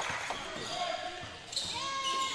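Gym sound during live basketball play: a ball bouncing on the hardwood court amid background voices, with a couple of brief high tones.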